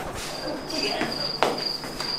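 Cricket chirping sound effect: a high-pitched, evenly pulsing chirp that runs steadily, the stock cue for an empty, awkward silence. A single sharp knock sounds about one and a half seconds in.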